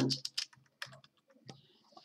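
Computer keyboard typing: a few separate key presses spread out over two seconds.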